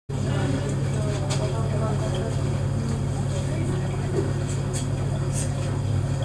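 Steady low hum with faint voices of people talking in the background and a few light clicks.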